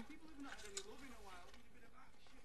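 Faint speech: a voice talking quietly, low in level, mostly in the first second.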